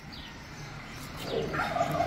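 A turkey gobbling briefly, about a second and a half in.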